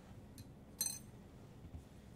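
A glass beaker clinking once, lightly, about a second in as it is picked up off the bench, with a fainter tick just before it.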